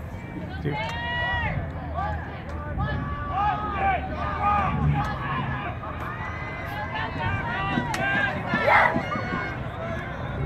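Several voices of spectators and players shouting and calling out across a lacrosse field, overlapping, with no clear words and the loudest shout near the end, over a steady low background rumble.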